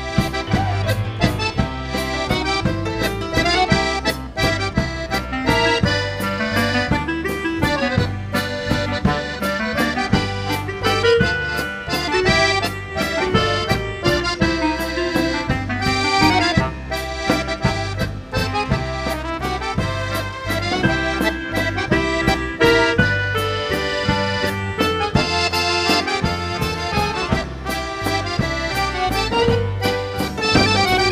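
Accordion-led band playing an instrumental tune with a steady beat and a bass line underneath.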